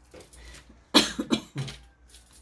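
A woman coughing, a short run of coughs starting about a second in, the first one the loudest.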